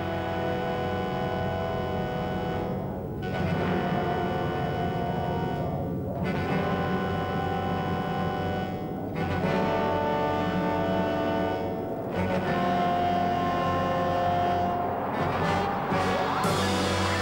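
Dramatic background score of long held chords, moving to a new chord about every three seconds, over a steady low drone.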